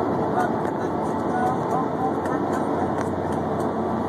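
Steady highway road noise of a car in motion, heard from inside the cabin with the phone's microphone held against the rear side window.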